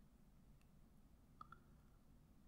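Near silence, then two faint clicks close together about one and a half seconds in: the side panel of a Dell Optiplex 790 tower case snapping shut.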